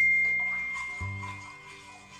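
A bright bell-like ding, a subscribe-button notification sound effect, fading out over background music. A new low music note comes in about a second in.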